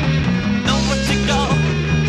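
Late-1960s rock band recording of electric guitar, bass and drums playing together. A wavering, bending higher line comes in under a second in.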